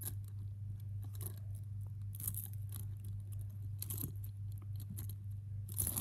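Metal keychain chains and split rings on Lego minifigure keychains clinking as they are turned in the hand, in a few short scattered bursts. A steady low hum runs underneath.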